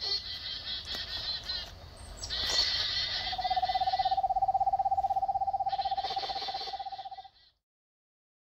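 Birdsong: high twittering and trilling birds, joined about three seconds in by a lower, steady, rapidly pulsing trill held for about four seconds. All of it cuts off suddenly near the end.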